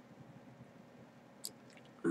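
Near silence: room tone, with one short, sharp click about one and a half seconds in as the multimeter probes and mod are handled.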